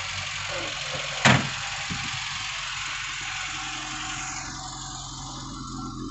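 Autobianchi A112 Abarth's freshly rebuilt four-cylinder engine idling steadily, with one sharp knock about a second in.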